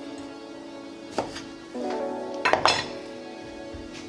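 A kitchen knife cutting through a lime and knocking on a wooden cutting board: one sharp knock about a second in, then a quick couple more about two and a half seconds in, over steady background music.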